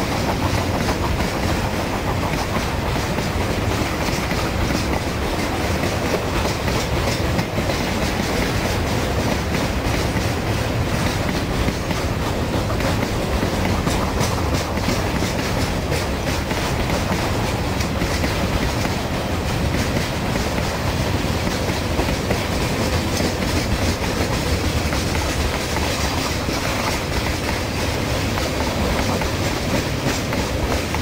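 A long freight train's wagons rolling past at close range, a steady clickety-clack of wheels over the rail joints.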